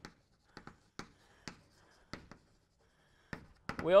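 Chalk writing on a blackboard: a run of short, sharp taps and scratches as letters are stroked out, about eight separate strokes, with a man's voice starting near the end.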